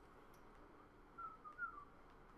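Quiet room tone, then from about a second in a few faint, short, high chirping squeaks, each sliding slightly in pitch.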